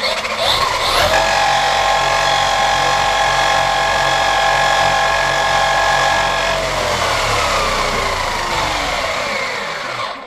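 Electric motor and drivetrain of a radio-controlled monster truck running with its wheels off the ground: a whine that rises as it spins up about a second in, holds steady for about five seconds, then winds down slowly in pitch as the wheels coast to a stop.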